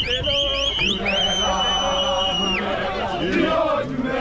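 A group of runners singing and chanting together. Over them a high whistle sounds in quick rising chirps, then one long steady blast of about a second and a half.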